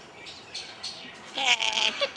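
Red-sided eclectus parrot giving a loud, wavering call that starts about one and a half seconds in.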